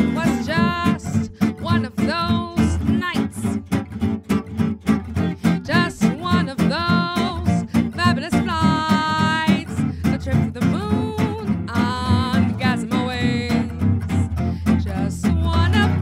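Gypsy-jazz (jazz manouche) trio: two acoustic guitars keeping a pulsing rhythm accompaniment under a woman's wordless, scat-like vocal line, which holds one long note about nine seconds in.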